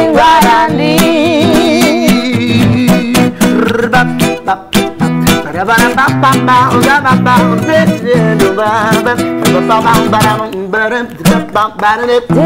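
Classical guitar strummed in a lively swing rhythm, with a voice singing over it in a live acoustic performance.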